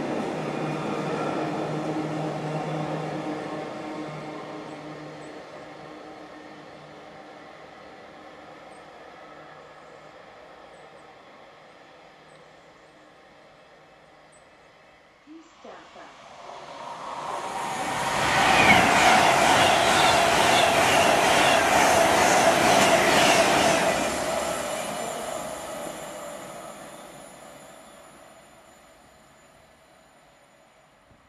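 A freight train of box wagons running away into the distance, its sound slowly fading over the first fifteen seconds. Then a Class 390 Pendolino electric train passes through at speed: loud for about six seconds, then fading away.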